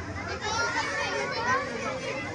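A crowd of children talking and calling out at once, overlapping chatter with no single voice standing out.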